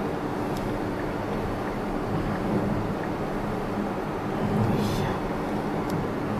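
Steady low tyre and road rumble with some wind noise inside the cabin of a 2020 Tesla Model S at highway speed. There is no engine sound, since the electric drive runs quietly.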